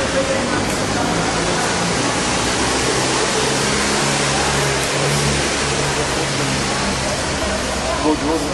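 Steady rushing noise with faint, indistinct voices under it.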